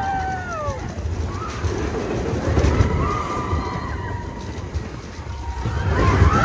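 Riders screaming on a Big Thunder Mountain Railroad mine-train roller coaster over the steady low rumble of the moving train and rushing air. A long held scream ends about a second in, and fainter drawn-out cries follow.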